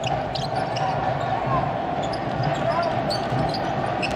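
Basketball being dribbled on a hardwood court over the steady hum of an arena crowd.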